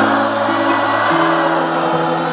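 Live pop-rock band music with an electric guitar and held chords that change about a second in, under many voices singing together: the concert audience singing along.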